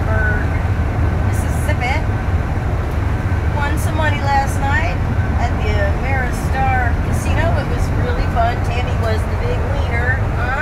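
Motorhome on the road, heard from inside the cabin: a steady low road and engine rumble. From about three and a half seconds in, short high gliding squeaks and whines rise and fall over it.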